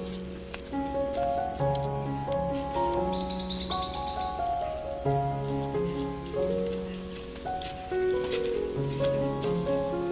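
Forest insects keep up a steady, high-pitched drone under soft instrumental background music with slow, held melody notes and a recurring low bass note. A short chirping trill rises above the drone about three seconds in.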